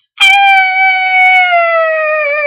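A girl howling like a dog: one long, loud, high "owww" held for over two seconds, its pitch sliding slowly down.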